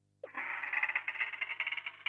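Sound effect of a wooden door creaking open: one long, even creak with a fine rapid flutter, starting a moment in.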